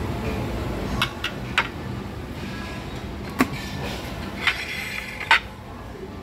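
Metal serving tongs clinking against ceramic plates, about six short, sharp clinks with the loudest near the end, over a steady background hum.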